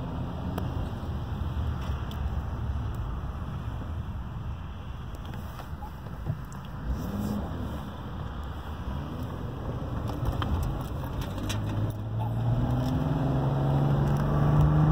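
Car engine and road noise heard from inside the cabin while driving. Near the end the engine gets louder and its note climbs as the car accelerates.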